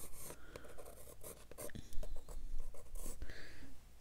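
Brown watercolor pencil scratching across cold-press cotton watercolor paper in short, irregular strokes.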